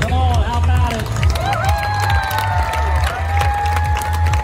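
A song with a steady bass beat and a singing voice; about two seconds in the singer holds one long note.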